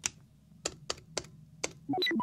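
Five separate, irregularly spaced clicks of computer keys being pressed, over a faint low hum.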